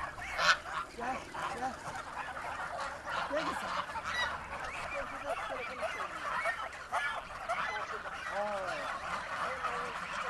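A flock of domestic geese honking and calling, many short calls overlapping into a continuous clamour.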